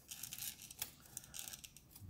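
Faint rustling and light scattered clicks of hands handling an APS negative strip in a plastic film holder, moving it through a film scanner.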